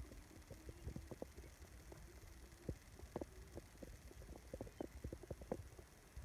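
Faint wind buffeting the microphone in a grass field: a low rumble with scattered soft, irregular thumps.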